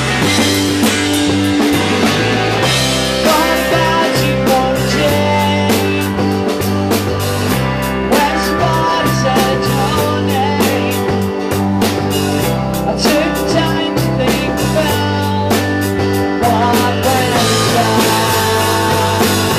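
Rock band playing loudly: a drum kit keeping a steady beat under a bass line that changes note every second or so, with electric guitar on top.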